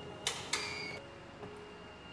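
Two sharp clicks about a third of a second apart from a keycard access reader and its electronic door lock as a card is swiped and the lock releases.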